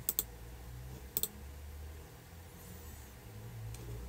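Computer mouse button clicking: a quick pair of clicks right at the start and another pair about a second in, over a faint low hum.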